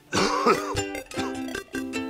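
Light plucked-string background music, ukulele-like, with a person coughing near the start.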